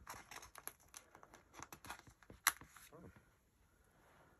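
Alphabet letter stickers being peeled off a paper sticker sheet and handled: faint, quick crackles and clicks, with one sharper click about two and a half seconds in.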